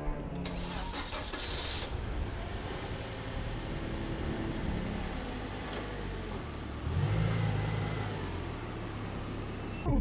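A Volvo XC90's engine starting and running steadily, growing louder for a while about seven seconds in.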